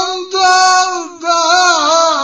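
A solo voice singing a slow, ornamented melody with vibrato, in long held phrases broken by two short pauses.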